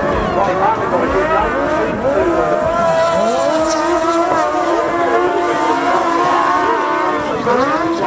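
Several speedway sidecar engines racing together around a dirt track, with many overlapping engine notes rising and falling in pitch as the outfits throttle through the turns.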